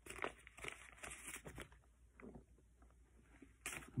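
Faint, intermittent crinkling and rustling of sealed paper gauze-sponge packets being handled and flipped through.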